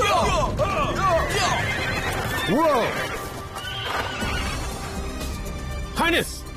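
Several horses neighing over the low rumble of a galloping cavalry charge, with background music. The whinnies come thick in the first second and a half, with one loud neigh about two and a half seconds in.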